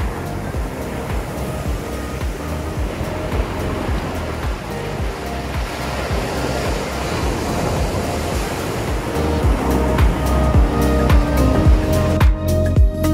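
Small sea waves breaking and washing up the sand right at the microphone, a steady surf rush. Background music with a beat runs underneath and grows louder near the end.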